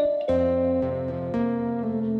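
A kalimba and a large plucked board zither playing together: ringing notes that sustain and overlap, with new notes plucked about every half second.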